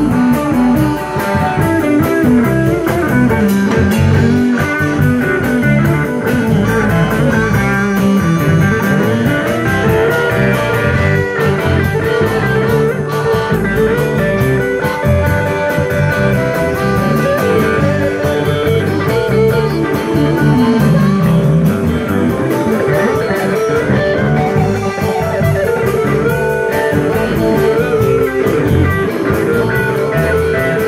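Live electric blues band playing an instrumental passage with a steady beat: two electric guitars, a Les Paul-style and a Stratocaster-style, over electric bass and drum kit.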